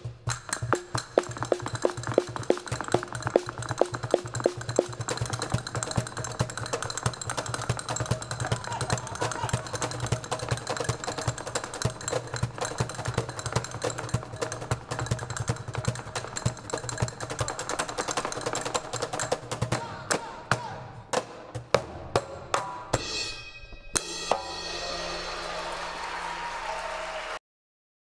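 Live flamenco percussion: fast, dense djembe drumming together with crisp castanet clicks, building to a finish. The strokes stop a few seconds before the end, and audience applause follows.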